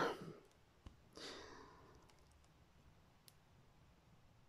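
Quiet pause: a faint click just before a second in, then a soft exhale, and another tiny click near the end.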